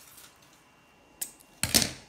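A faint click about a second in, then a short clatter near the end as a pair of metal-bladed craft scissors is set down on a countertop.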